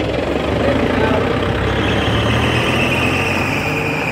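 A vehicle engine running nearby with a steady low hum; about halfway through, a steady high-pitched tone comes in over it.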